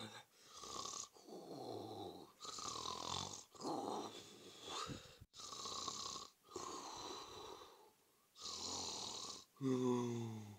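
Donald Duck's cartoon snoring in his sleep: a run of about nine snores and breaths, each lasting about a second, some with a gliding whistle in them.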